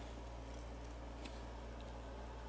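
Faint rustling of dry quick oats being swept by hand across a plastic storage bin, over a low steady hum.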